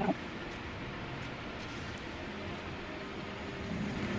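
Steady low room noise with faint rustling and a few light ticks as cotton Ankara print fabric and pins are handled by hand.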